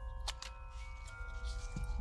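Horror-film score: several tones held steady at different pitches over a low drone, with a single short click about a quarter second in.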